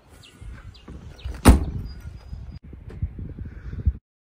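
A car's rear hatch is pulled down and shut with one loud slam about a second and a half in. Handling noise and a few lighter knocks surround it.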